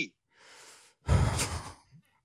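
A man's sigh into a close microphone: a faint breath in, then a heavier breath out about a second in.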